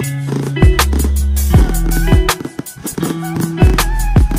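Background music with a deep bass and a drum beat.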